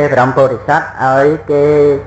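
A man's voice chanting in a slow, sing-song intonation, as in Buddhist recitation, in three drawn-out phrases; the last note is held steady near the end.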